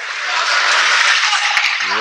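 Spectators at an ice hockey game applauding: a dense clatter of clapping that swells in over the first half second and then holds steady, with a few sharp clicks over it.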